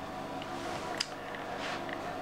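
Soft rustling of a towel rubbed over bare feet to dry them, over a faint steady room hum, with one small click about a second in.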